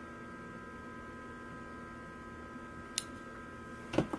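Steady electrical hum with several thin, high, steady tones running underneath. A single short click comes about three seconds in.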